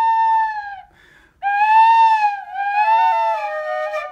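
Bamboo flute playing a slow melody: a held high note that stops just under a second in, a short pause for breath, then a new phrase that swells, falls back and steps down to lower notes.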